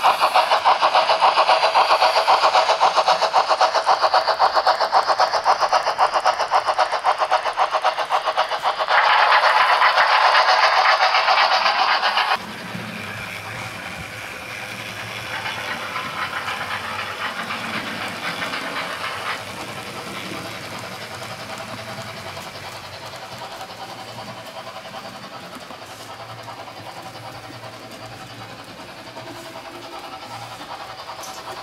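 Model steam locomotives' DCC sound decoders playing rapid steam exhaust chuffs through their small onboard speakers, loud at first and brighter for a few seconds, then dropping off suddenly about twelve seconds in to a quieter, lower running sound.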